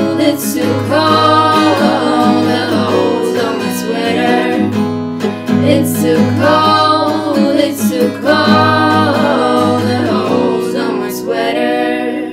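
Female voices singing in harmony over a strummed Yamaha acoustic guitar, in long sung phrases over held chords. The music begins to die away near the end.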